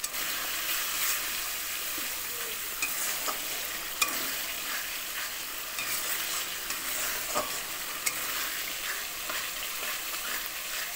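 A curry base of tomatoes and onions sizzling in oil in a metal kadai while a spatula stirs and scrapes through it. Scattered sharp clicks of the spatula knocking the pan sound over the steady sizzle, the loudest about four seconds in.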